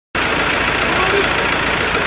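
Steady, noisy outdoor background with a vehicle engine idling, cutting in abruptly just after the start.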